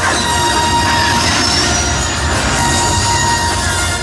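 Show sound effects played loudly over the park's loudspeakers: a dense rushing noise with held high tones and faint gliding whistles, rather than music.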